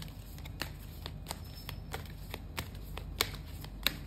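An angel card deck being shuffled by hand: a run of quick, irregular card clicks, with two sharper snaps in the last second.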